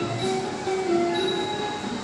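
Thai traditional ensemble music accompanying a classical dance: a melody of held notes stepping between pitches, with faint percussion strokes.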